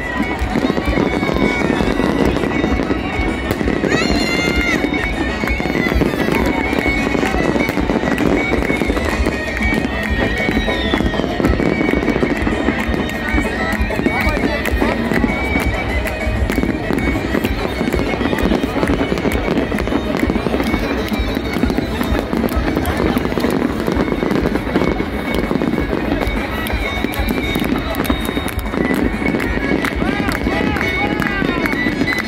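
Fireworks going off with many sharp crackles over the constant noise of a large crowd's voices, with music playing. The crackles come thickest in the second half.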